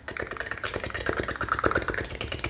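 A fast, steady run of crisp clicks and crackles close to the microphone, many per second.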